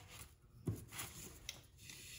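Faint rubbing and rustling of a paper towel wiping glue off a wooden piece, with a soft knock about two-thirds of a second in.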